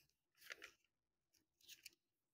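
Pages of a Quran being turned by hand: two faint papery rustles, one about half a second in and one near the end.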